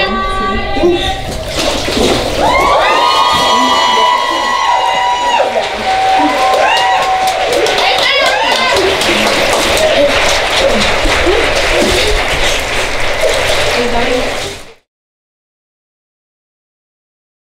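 Water sloshing in a baptismal pool as a woman is laid back under and brought up. Then several women cheer with long, rising whoops, and the whoops give way to clapping and cheering that stops abruptly near the end.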